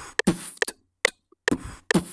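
A person beatboxing a trap-style drum pattern, with mouth kicks, snares and hissed hi-hats, over the FL Studio metronome. The metronome ticks steadily at 140 beats per minute, a little over two clicks a second.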